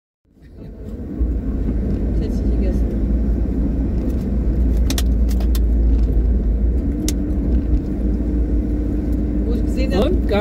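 Car driving along a road, heard from inside the cabin: a steady low drone of engine and tyres that fades in over the first second, with a few sharp clicks or rattles around the middle.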